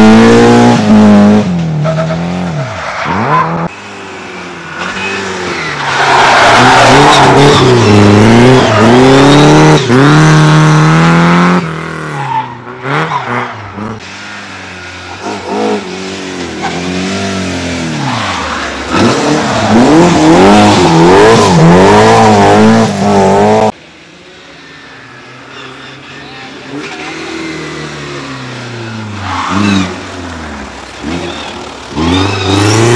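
Mercedes-Benz 190E rally cars driven hard through hairpin bends, engines revving high and dropping with each gear change as they pass. Several passes follow one another, each ending in an abrupt cut. The last pass is quieter and more distant.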